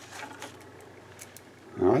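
A quiet pause holding only faint room noise and a few faint clicks, with a man's voice starting near the end.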